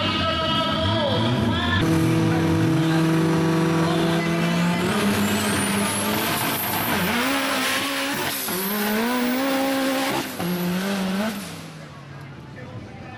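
Turbocharged Suzuki Samurai engine held at steady high revs on the start line, then launching hard on dirt. A high turbo whistle climbs as it accelerates, and the engine pitch drops and rises again at each gear change. The sound falls away sharply near the end as the vehicle pulls off down the track.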